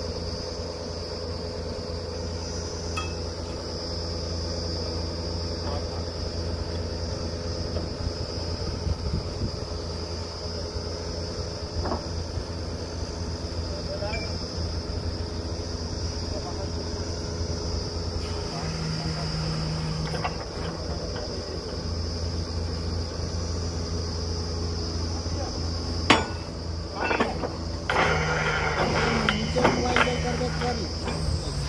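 Truck-mounted borewell drilling rig running steadily, its engine giving a constant low hum, with a steady high shrill over it. A sharp click and a few metal knocks and clanks come near the end.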